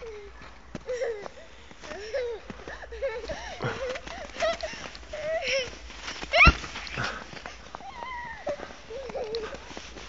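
A young child's high voice chattering and calling out in short snatches, with one louder call about six and a half seconds in.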